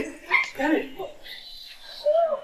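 A person's voice in short phrases, mostly in the first second, then quieter.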